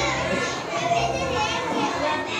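A young boy's voice speaking aloud, with other children's voices in the background.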